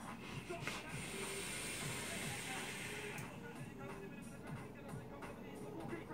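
A long draw on a sub-ohm vape mod: a steady hiss of the coil firing and air being pulled through, lasting about two seconds and then easing off, over background music.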